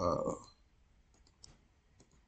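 A few faint clicks of a computer mouse button about a second in, after a spoken "uh" at the start.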